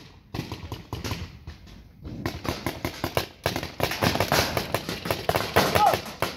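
Paintball markers firing rapid strings of shots, a few pops at first and then a dense, louder volley from about two seconds in.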